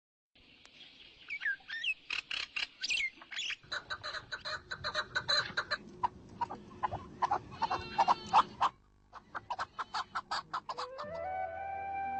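Birds chirping and calling: gliding chirps at first, then a dense run of short, quickly repeated calls, broken by a brief pause before more calls. Soft sustained music comes in near the end.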